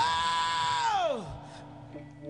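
A female singer belts a single high wailing note with no band behind it. The note swoops up, holds, then slides down and fades out about a second and a quarter in.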